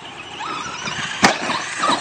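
RC monster truck driving across grass toward a creek: its motor and tyres make a steady rising noise with a faint whine. There is one sharp crack a little over a second in.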